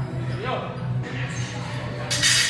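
Busy gym ambience: background voices over a steady low hum, with dull thuds on the rubber floor.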